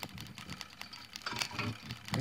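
Irregular clicking and crackling from a brushless front-load washing machine motor turned slowly by hand as a generator, its magnets grinding, while its rectified DC output sparks on and off across two copper wire ends.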